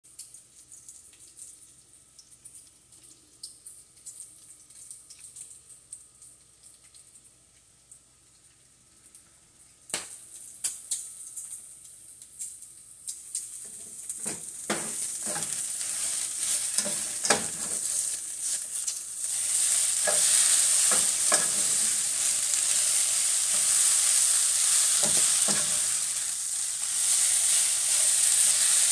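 Shredded hash browns and bacon frying in pans on a gas stove. A faint sizzle at first, then a few sharp clicks and a spatula scraping and turning the hash browns. The sizzling grows loud about two-thirds of the way through.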